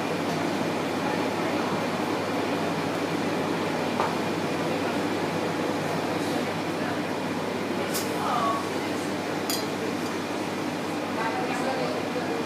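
Steady room noise with faint voices in the background and three light clinks spread through.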